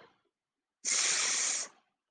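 A woman's voice holding a long phonics 's' sound, a steady hiss just under a second long starting about a second in: the first sound of the word "sock" being sounded out.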